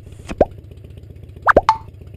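Cartoon 'plop' sound effects: two quick downward-swooping pops, the first about a third of a second in and a doubled one about a second later, ending in a short tone.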